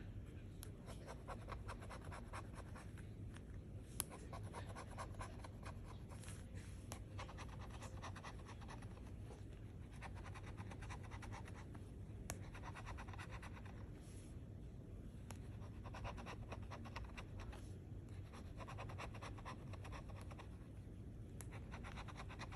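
Faint scratching of a flat metal tool scraping the silver latex off a lottery scratch-off ticket, in runs of quick back-and-forth strokes broken by short pauses. A single sharp tick about four seconds in.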